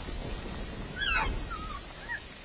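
Dilophosaurus film creature call: a warbling, bird-like hoot about a second in, followed by a shorter second hoot, over a steady hiss of rain.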